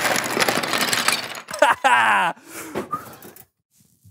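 Wooden Jenga blocks poured out of their boxes, clattering onto a tabletop in a dense rush for about a second and a half. A short vocal exclamation follows, then it goes quiet.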